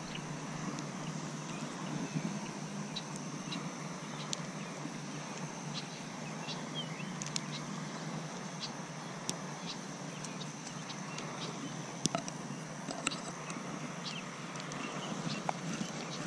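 Quiet outdoor background hiss with a faint steady high-pitched tone and scattered single light clicks, no voices.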